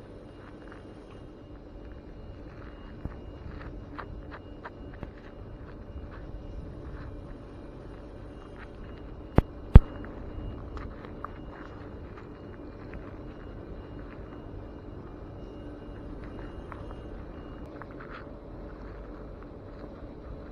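Rubber-gloved fingers handling and rubbing a small muddy metal find close to the microphone: faint scattered clicks and scrapes over a steady low hum, with two sharp clicks in quick succession about halfway through.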